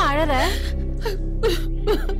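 A woman sobbing and whimpering: a wavering wail at the start, then short falling sobs about every half second, over steady background music.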